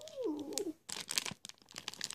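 A brief soft voiced sound that glides up and then down in pitch, followed by faint scattered crinkles and clicks of a clear plastic bag being handled.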